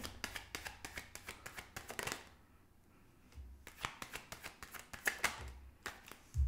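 A deck of tarot cards shuffled by hand, a rapid run of crisp card clicks for about two seconds, a brief pause, then more shuffling and a few sharper slaps as cards are dealt onto a wooden table near the end.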